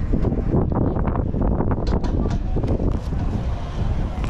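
Wind buffeting the camera's microphone as a low rumble, with a few short clicks from handling the camera.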